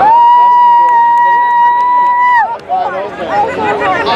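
A horn sounds one steady blast for about two and a half seconds, its pitch sagging as it cuts off. Crowd chatter follows.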